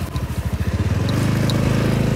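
Small motorcycle engine running with the bike under way. Its low exhaust pulse is uneven for the first half second, then steady, over the rush of wind on the microphone.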